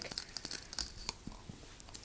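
Light clicks and rustling from a clear plastic half-shell casing of a toy laser ball being handled and turned in the hand.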